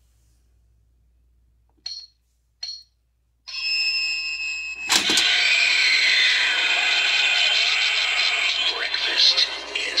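Battery-powered haunted toaster Halloween prop playing its loud built-in spooky soundtrack through a small speaker as its skeleton hands rise from the slots. Two short chirps come about two seconds in, the sound effects start shortly after with a sudden bang about five seconds in, then run on with a voice line near the end.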